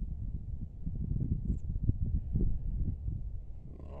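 Low, gusty rumble of wind buffeting the microphone, rising and falling without a steady pitch.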